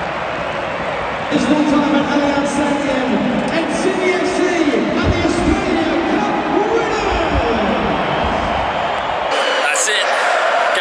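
Large stadium crowd cheering at full time, with massed voices singing together from about a second in. The sound changes abruptly near the end to quieter crowd noise.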